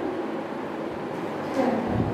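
Steady room noise, with a short voice sound about one and a half seconds in.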